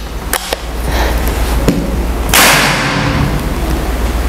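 Moser OD32 L-Max single-shot PCP air rifle being loaded, with a few light clicks from the breech, then fired a little past halfway: one sharp, loud report with a short ringing tail. It is a high-power shot that the chronograph clocks at about 1100 fps.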